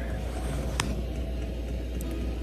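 Steady low hum of a diesel air heater running, with a single sharp click a little under a second in.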